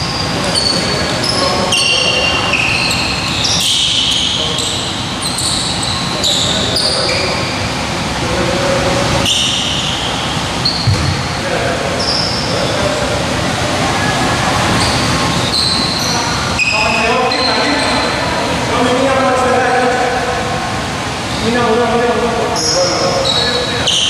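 Sneakers squeaking on a hardwood basketball court in a reverberant gym: many short high squeaks, mostly in the first two-thirds, with a few sharp thuds. Players' voices carry through the hall, clearest in the last third.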